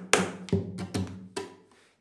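Nylon-string guitar played with percussive strokes: about four sharp strummed hits on the strings and body, each leaving the strings ringing, the last ones weaker and fading out near the end.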